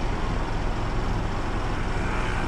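Steady low rumble and hiss of a moving passenger vehicle, heard from inside the cabin.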